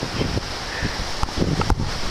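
Wind buffeting the microphone, a steady rough rumble, with a few sharp clicks in the second half.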